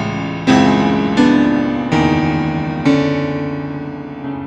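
Grand piano played solo: four loud chords struck under a second apart, each left ringing and fading away.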